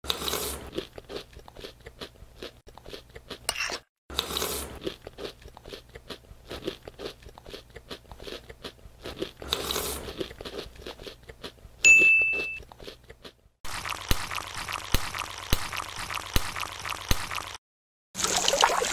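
Close-up crunchy chewing of cooked vegetables, many quick irregular crunches, with a short high ding about twelve seconds in. In the last few seconds a steady hiss with scattered ticks follows.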